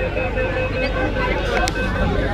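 Inside a crowded metro train carriage: the train running, with a steady low rumble and a steady whine, under passengers' chatter.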